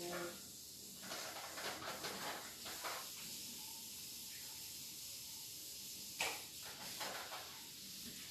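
Faint rustling and shuffling of craft supplies being handled and rummaged through, in short bursts over the first few seconds, with a brief louder scrape about six seconds in, over a steady low hiss.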